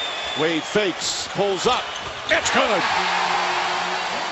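Live basketball game sound: a steady arena crowd noise under short, pitch-arching calls from a man's voice, with a few sharp on-court sounds from the ball and sneakers.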